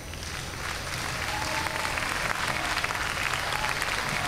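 Audience applauding. The clapping starts at once, builds over about the first second, then holds steady.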